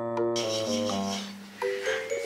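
A hand rubbing and stroking a golden retriever's long coat close to the microphone, a soft scratchy rustle that starts about a third of a second in and swells and fades with each stroke, under gentle background music.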